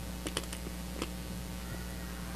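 A steady low electrical hum with about four light clicks in the first second, like small objects being handled on the altar.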